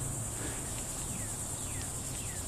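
A chorus of insects keeping up a steady, high-pitched buzz with a fast, even pulse.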